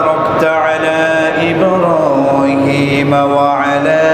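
A man's voice chanting in long, drawn-out melodic phrases, the notes held and sliding slowly up and down in pitch.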